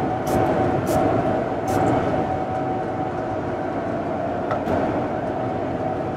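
Steady cabin noise of a Boeing 787-9 airliner in flight, with a faint steady hum. Over it, three short hisses of a cologne pump-spray bottle in the first two seconds.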